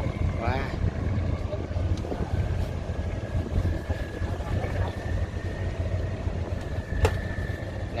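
Diesel engines of fishing boats running in the harbour with a steady low rumble, a faint thin steady tone above it through the middle, and one sharp knock about seven seconds in.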